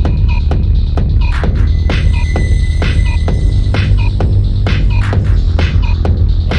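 Electronic remix track with a heavy, steady bass drone under a regular percussive beat and short repeating synth blips. A sustained high synth tone enters about two seconds in and drops out before the four-second mark.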